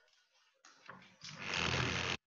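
Rustling of plastic packaging as a model dinosaur bone is unwrapped, heard through a video call. It builds over about a second and cuts off abruptly at the end.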